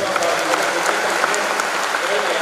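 Audience applause, steady and dense, with a man's voice speaking over it.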